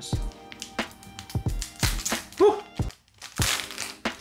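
A Pokémon booster pack's foil wrapper crinkling and being torn open in a series of sharp crackles, with a longer rip about three and a half seconds in. The pack is a stubborn one that is hard to tear. Background music plays underneath.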